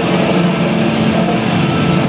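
Loud live rock music from a stadium PA, heard from the stands, with held notes that carry on through.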